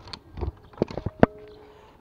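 Hard plastic lid of a pet food storage bucket being handled: a few clicks and knocks of plastic on plastic, the loudest just past the middle, followed by a short faint ring.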